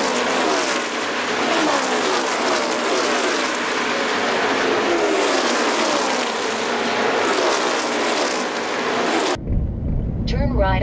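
Engine and road noise, full of overlapping engine tones that keep sliding down in pitch, like fast cars going by. It cuts off suddenly near the end, and ordinary in-car sound takes over.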